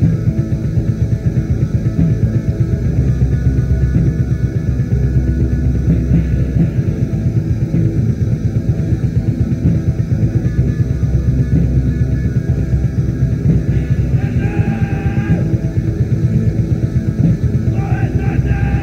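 Raw black metal from a 1995 cassette demo: a dense, murky, lo-fi band mix with a fast, steady pulse running through it. A brighter sound rises above the mix briefly about fourteen seconds in.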